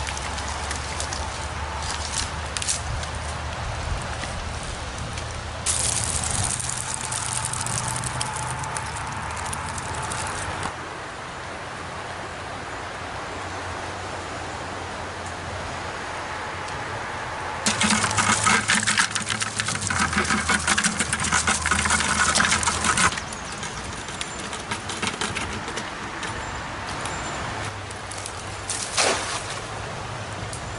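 River water running and splashing along the bank, in several short takes that cut in and out abruptly, loudest for a few seconds just past the middle.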